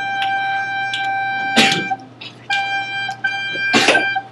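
Soprano recorder holding a steady G, the note kept going across from one line of the song to the next. It sounds one long note, stops about two seconds in, then sounds again after a short pause, with a brief break in it, and a couple of sharp clicks along the way.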